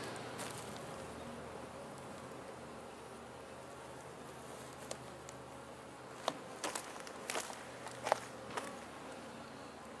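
Honeybees buzzing at an open hive, a faint steady hum. From about five seconds in, a few sharp clicks and scrapes as a metal hive tool pries at the wooden frames.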